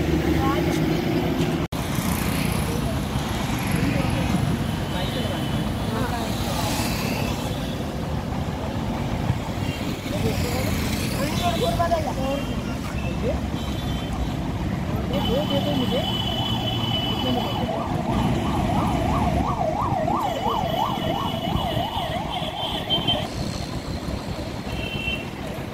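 Steady roadside traffic noise, with vehicles passing, and faint voices at the stall. From about 18 to 22 seconds a high tone warbles rapidly up and down.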